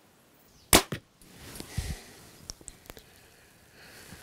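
A 65-pound compound bow firing a carbon arrow: a sharp crack of the string at release about three-quarters of a second in, followed a fifth of a second later by a second, quieter crack. The arrow, a 371-grain Micro Ventilator LT, leaves at 312 feet per second.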